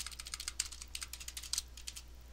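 Computer keyboard typing: quick, irregular key clicks, fairly faint.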